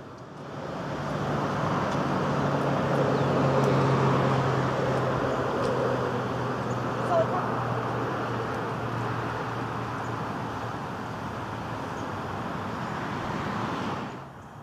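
Motor vehicle noise from nearby traffic: a steady engine hum under tyre rush. It swells over the first few seconds, then slowly eases off.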